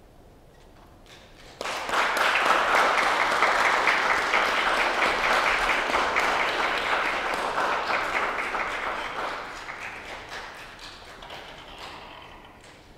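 Audience applauding, starting suddenly about a second and a half in, at full strength for several seconds, then fading away near the end.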